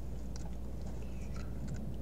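Steady low electrical hum in the recording, with a few faint, scattered clicks and no speech.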